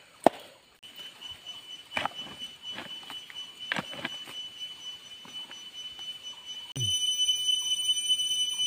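A hand tool striking and scraping into wet soil several times, digging out a crab burrow, over a steady high-pitched whine that turns suddenly louder and fuller near the end.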